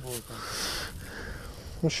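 A person sniffing: one breathy intake of air through the nose, lasting just under a second.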